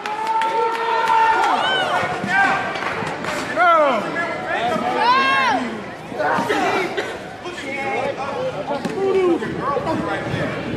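Wrestling crowd shouting and yelling, several voices overlapping, with the loudest calls around the middle.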